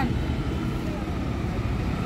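Street traffic noise with a steady low engine rumble from an auto-rickshaw passing close by, and faint voices in the background.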